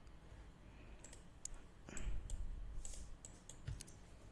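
Faint, irregular clicks of a computer mouse and keyboard, about a dozen of them, starting about a second in, as text is copied and pasted on a desktop PC.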